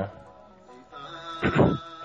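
Background music with a held tone, joined about one and a half seconds in by a short, loud voice-like sound.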